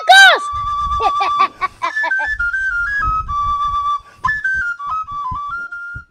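A high whistle tune of single clear notes stepping up and down, over soft low beats. It opens with a few quick swooping tones.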